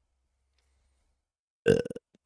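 Near silence, then about a second and a half in a man burps once, short and loud.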